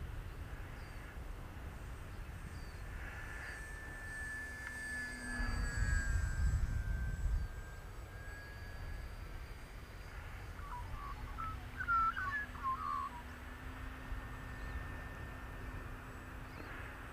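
Faint hum of a small electric RC plane's motor and tractor propeller flying at a distance, its pitch easing down a little as it passes. Wind rumbles on the microphone for a couple of seconds about five seconds in, and a few bird chirps come around twelve seconds in.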